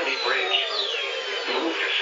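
Automated NOAA Weather Radio voice reading a Special Marine Warning, played through weather radio receivers; the sound is cut off sharply in the treble, as a narrow radio channel is.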